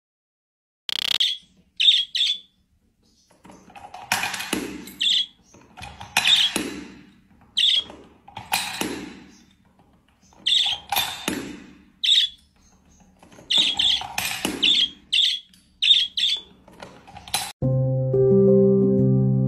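A small green parrot giving short high chirps, between repeated clattering as bottle caps are pushed into a plastic container, each clatter falling away over about half a second. Music starts near the end.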